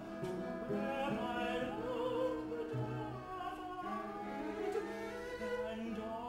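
A male opera singer singing over a small chamber ensemble with bowed strings, in a continuous stretch of held, sustained notes.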